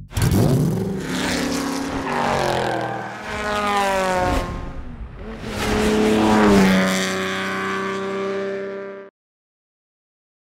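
A racing car engine revving, its pitch rising twice, then holding steady before cutting off suddenly near the end.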